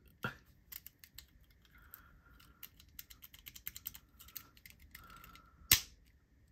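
Light clicks, taps and faint scraping as the sliding pieces of a Toggle Tools Mini fidget tool are worked by hand, with one sharper, louder click near the end as a piece that had come off its track goes back in.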